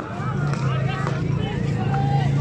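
Scattered voices of many people calling and shouting across an open ground over a steady low hum.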